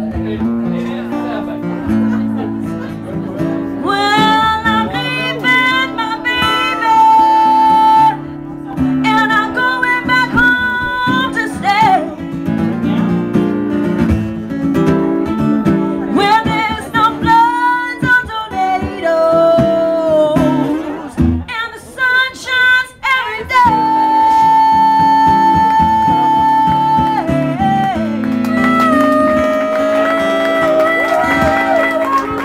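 Live acoustic blues: acoustic guitar playing chords under a wailing melodic lead that bends between notes and holds long notes, most plainly about two thirds of the way in.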